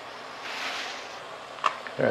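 A crayfish being lowered onto the steamer rack of a wok over a gas burner: a soft hiss swells and fades in the first second, then a single light click of shell against the pan near the end.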